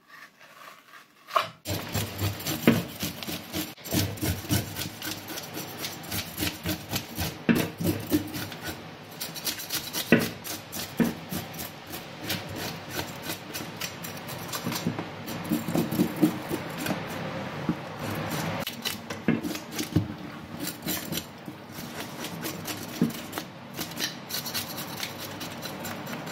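Scales being scraped off a sea bream in a stainless steel sink: quick, repeated rasping strokes, starting about a second and a half in and going on in rapid runs.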